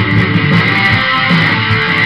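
Instrumental passage of a rock song: guitar strumming, with no singing.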